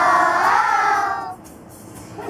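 A large group of children singing together, one held, wavering phrase that stops about a second and a half in, leaving a short lull.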